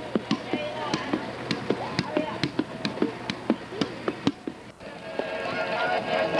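Indistinct voices, short calls and chatter mixed with frequent sharp knocks or clicks. About five seconds in, after a brief dip, it gives way to a denser, steadier murmur of voices.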